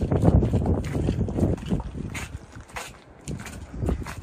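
Wind buffeting the microphone: a low rumble, strongest in the first couple of seconds and then easing off.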